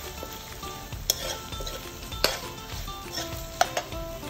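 A steel ladle stirring stir-fried chicken in a metal wok over a light sizzle, scraping and clinking against the pan. Three sharp clinks stand out, about a second in, a little past two seconds, and near the end, the middle one the loudest.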